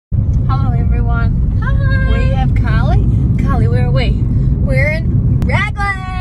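Steady low rumble of a car's engine and road noise heard from inside the cabin while driving. Over it, a woman's voice comes in long, drawn-out, wavering notes without clear words.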